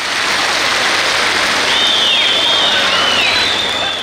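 A large crowd of children clapping and cheering, a dense even wash of noise, with a few high, dipping whistle-like calls in its second half.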